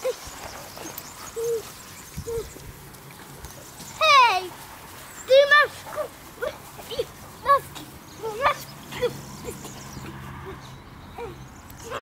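Spaniel puppies whining and yelping: a string of short, high whimpers, with two louder yelps about four and five and a half seconds in, the first falling in pitch.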